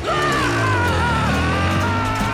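Background score music: a wavering high melody line over a low sustained drone.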